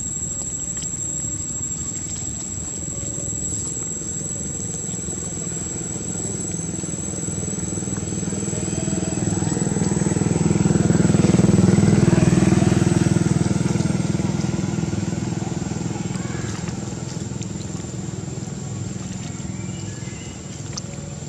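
A motor vehicle passing by: its engine grows louder to a peak about twelve seconds in and then fades away, with its pitch bending as it goes. Over it all runs a steady low hum and a thin high-pitched tone.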